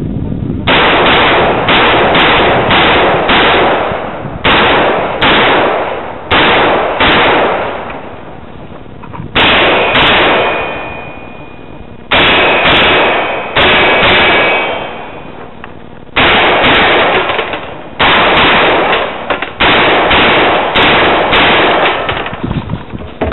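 A shotgun fired rapidly close to the microphone: about two dozen sharp shots in quick strings, with pauses of a second or two between strings. A metallic ringing lingers after some of the shots in the middle of the run.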